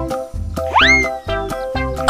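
Upbeat children's background music with a steady beat, with one cartoon sound effect that swoops steeply up in pitch a little under a second in.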